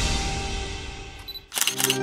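Background song music fading out, then a camera shutter sound effect: two quick, sharp shutter clicks near the end, as a transition to the next song.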